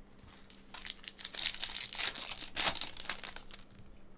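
Wrapper of a Bowman's Best baseball card pack torn open and crinkled by hand: a run of crackling that starts about a second in and is loudest near the end.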